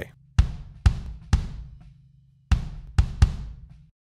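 Drum playback of a live kick drum recording layered with a sampled kick from Groove Agent, the sample's polarity reversed to 180°. About six hits ring out with deep low end and a pause midway. With the polarity reversed the layered kick sounds way fatter.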